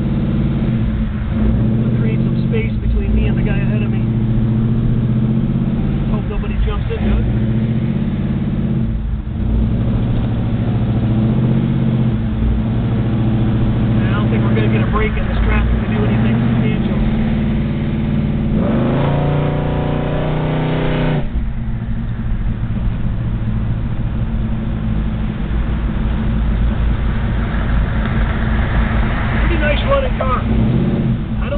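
Built 454 big-block V8 of a 1970 Chevrolet Chevelle heard from inside the cabin on the move, running with a deep, steady note. About two-thirds of the way through it pulls harder for a couple of seconds with a rising pitch, then eases off suddenly.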